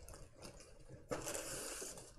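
Packing paper rustling and crinkling as items are unwrapped, with a longer burst of rustling starting about a second in.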